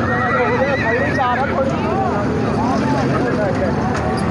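A horse whinnying: a high, wavering call a little over a second long that breaks up at its end, over the chatter of voices.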